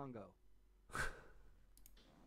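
A man's short, breathy exhale about a second in, then a couple of quick computer mouse clicks near the end that pause a YouTube video.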